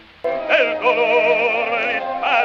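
Operatic baritone singing on an early historic recording, with a quick, wide vibrato over orchestral accompaniment. The voice and orchestra come back in after a brief pause at the start.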